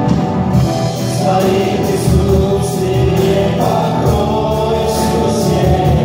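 Live worship band: several voices singing together over acoustic and electric guitars and a drum kit with cymbals.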